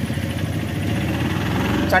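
A motor vehicle's engine running steadily at idle, a low, even hum.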